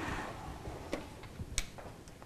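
A few soft, sharp clicks in the middle stretch, over faint room noise; no piano notes sound.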